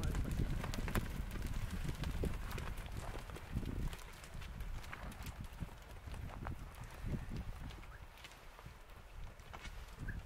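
Hooves of a herd of Hereford heifers walking and trotting over stony dirt, many irregular clicks and knocks, over a low rumble that fades over the first four seconds.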